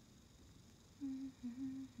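A woman humming a short melody with closed lips, in short stepwise notes, starting about a second in after faint room tone.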